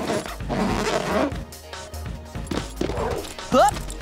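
Cartoon soundtrack: background music mixed with sound effects, and a short vocal exclamation near the end.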